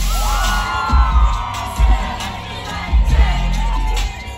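Loud live concert music with a heavy, pulsing bass beat, and the crowd cheering and whooping over it in long held cries.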